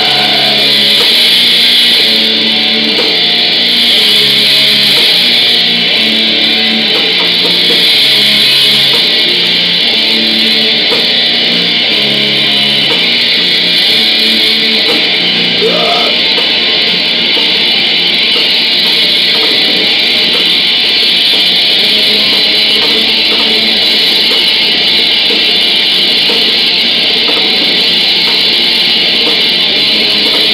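Black metal band playing live: loud, heavily distorted guitars in a dense, unbroken wall of sound over a shifting bass line.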